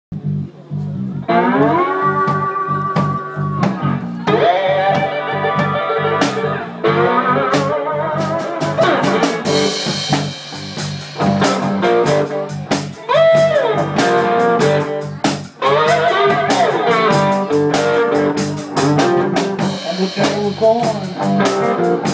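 Live blues-rock band playing an instrumental intro: electric guitar notes that slide and bend in pitch over a steady bass line and drum-kit beat.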